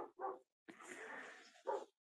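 A dog barking faintly a few times in short barks.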